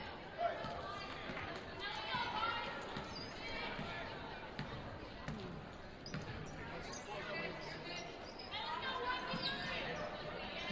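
Basketball being dribbled on a hardwood gym floor, echoing in the hall, with voices of players and spectators calling out over it.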